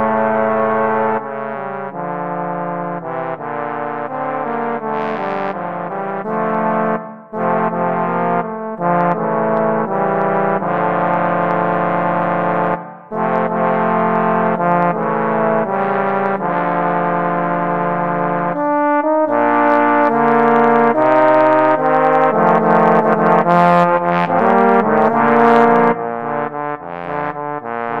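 A trombone trio of two tenor trombones and a bass trombone plays a sea shanty in three-part harmony. Held chords are broken by two brief pauses, then the music grows louder and busier, with quicker short notes in the second half.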